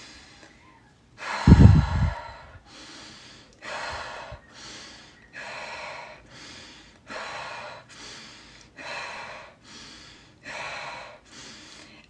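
A woman breathing in and out quickly and audibly in an even rhythm, a rapid breathwork exercise of about ten quick breaths. The first breath, about a second and a half in, is the loudest, and the rest follow at roughly one every second.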